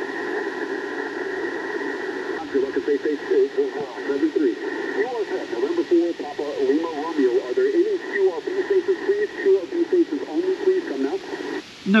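A distant amateur station's single-sideband voice coming through the speaker of an Icom IC-705 HF transceiver: thin, narrow-band speech over a steady hiss of band noise. The received voice cuts off just before the end.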